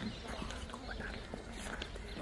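Faint outdoor background: scattered short bird chirps over a steady low rumble of wind on the microphone.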